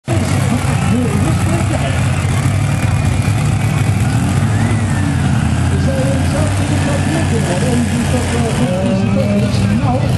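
Massey Ferguson 2805 pulling tractor's diesel engine running steadily without revving, with an indistinct public-address voice over it.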